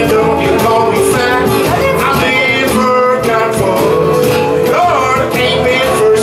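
Live blues band: a man sings over strummed acoustic guitar and a steady beat, with held notes running underneath.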